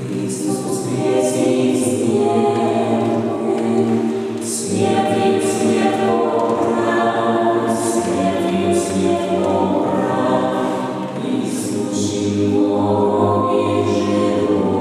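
A four-voice a cappella vocal group, one man and three women, singing sacred music in close harmony in a church. A new phrase starts right at the beginning and another about five seconds in.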